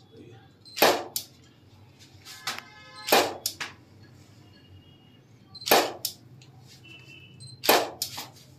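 Camera shutter clicks in a photo studio: six sharp clicks, some in quick pairs, at irregular intervals as the photographer shoots. A few faint, short high beeps come between them.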